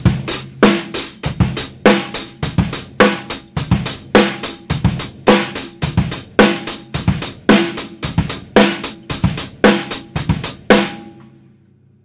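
Acoustic drum kit playing a slow basic beat: steady hi-hat strokes about four a second, with the bass drum and a snare hit on the third count of each bar. The playing stops about a second before the end.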